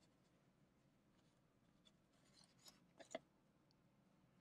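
Near silence, with faint scratching from a small paintbrush working acrylic paint, and two light clicks in quick succession about three seconds in.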